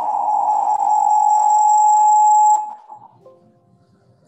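Audio feedback in a video call: a loud, steady single tone as the computer's speakers loop back into an open microphone. It cuts off suddenly a little over two and a half seconds in as the speaker volume is turned down to zero, leaving near silence.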